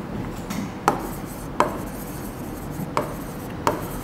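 Chalk writing on a blackboard: about five sharp taps of the chalk, spaced irregularly, over a faint scratching as the letters are drawn.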